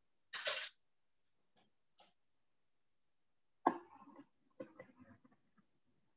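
A person coughing: a short cough about half a second in, and a sharper one near four seconds that trails off over about a second and a half.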